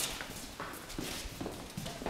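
Hurried footsteps on a hard workshop floor, a step roughly every half second.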